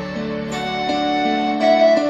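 Instrumental karaoke backing track: held chords that change every so often, with no voice.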